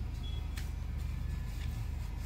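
Scissors snipping through folded tissue paper: a sharp snip about half a second in and a lighter one near the end, over a steady low hum.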